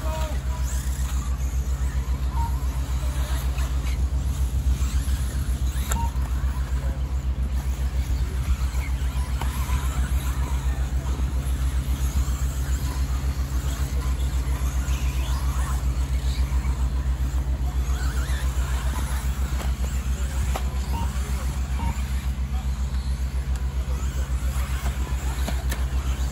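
A steady low mechanical rumble with a fast, even pulse runs throughout, with faint scattered higher whines and ticks over it.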